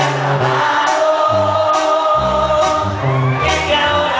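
Live banda music: a man singing into a microphone over clarinets and horns holding sustained notes, a bass line stepping between low notes, and regular cymbal hits about once a second.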